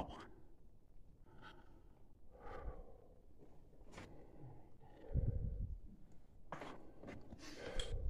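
Quiet, with faint murmured voices and breaths, a sharp click about four seconds in and a low thump about a second later, then scuffing movement noise near the end.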